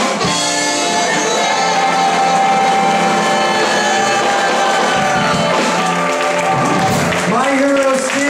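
Live swing band music, the band holding long sustained notes through much of the passage, with voice-like sounds rising near the end.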